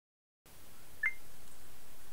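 Faint room hiss that starts about half a second in, with one short, high-pitched beep about a second in.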